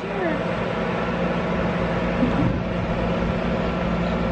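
Steady background noise with a constant low hum, and faint voices now and then.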